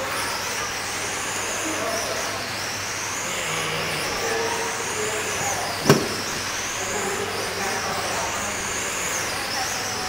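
Radio-controlled 1/10-scale sprint cars running on a dirt oval, their motors giving a high-pitched whine that rises and falls in pitch as they speed up down the straights and slow for the turns. A single sharp knock about six seconds in.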